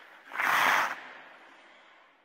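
A short, loud burst of noise of about half a second, a little way in, then a long fading tail. It is an outro sound effect as the show's closing music dies away.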